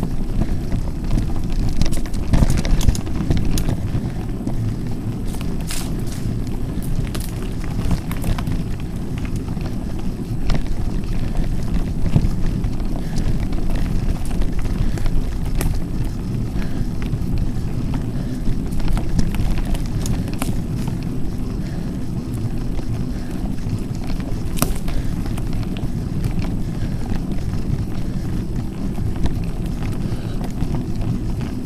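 Mountain bike being ridden over a dirt and gravel trail: a steady low rumble of wind and tyre vibration on the camera microphone. Scattered sharp clicks and rattles from the bike and the gravel break through it.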